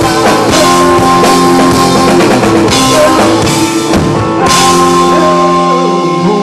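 Live blues-rock duo: a lap-style electric guitar holding chords over a drum kit with steady cymbal crashes. About four and a half seconds in the drums stop and the guitar chord is left ringing out and fading, the song's closing chord.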